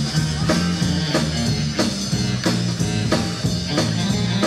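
Rockabilly band playing live: a drum kit keeps a steady beat of about three strokes a second under a moving bass line and guitar.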